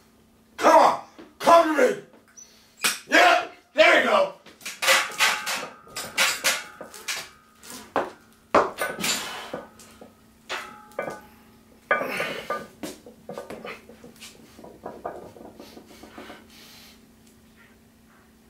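A lifter's wordless shouts and grunts as he psychs himself up for a heavy barbell back squat single, then a run of metal clanks and rattling as the loaded barbell shifts on the squat rack's hooks and the plates knock while he gets under it and unracks it. A steady low hum runs underneath.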